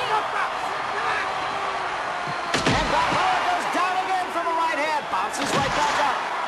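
Film soundtrack of a boxing bout: an arena crowd shouting and yelling, cut through by heavy punch impact sounds, one about two and a half seconds in and several in quick succession near the end.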